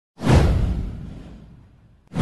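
A whoosh sound effect: one swell with a deep rumble under it, rising fast and fading away over about a second and a half.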